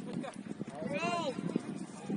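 A player's drawn-out shout on the pitch about a second in, rising and then falling in pitch, over distant calls and scattered thuds of play.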